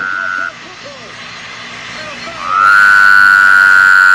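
A steady high tone cuts off about half a second in, leaving quieter background voices. About two and a half seconds in, a loud, sustained horn-like tone glides up and then holds steady.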